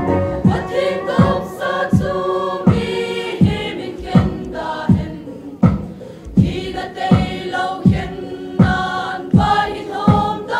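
Mixed youth choir singing a hymn together, many voices on a sustained melody. A steady low beat runs underneath, about three beats every two seconds.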